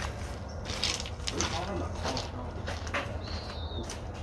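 Scattered light steps and knocks of a person moving about and handling a large terracotta pot, with a brief high squeak about three seconds in.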